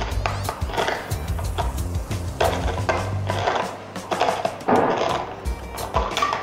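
Chef Remi handheld can opener being cranked around the rim of a steel soup can, its stainless-steel cutting wheel cutting the lid with a run of irregular clicks. Background music plays underneath.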